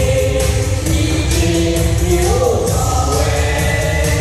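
Music: singers singing into microphones over a backing track with a steady beat.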